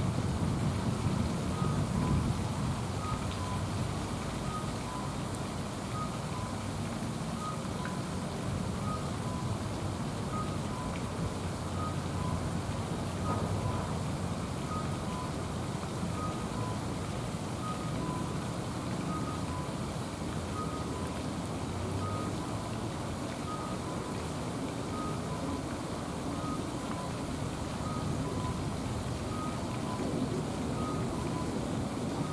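A steady low rumble of distant traffic with a faint two-tone electronic beep, high then low, repeating about every one and a half seconds, like a vehicle's warning alarm.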